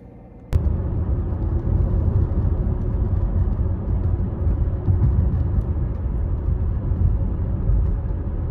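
Steady low rumble of a car driving, road and engine noise heard from inside the cabin, starting suddenly about half a second in.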